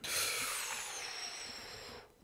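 A sudden hissing, whooshing noise, mostly high-pitched with a faint ringing tone in it, that fades slowly over about two seconds and then stops.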